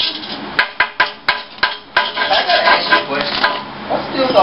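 A quick run of sharp metallic clinks and knocks, about seven in just over a second, as metal objects are handled and struck at a car in a shop, followed by mixed shop clatter and faint voices.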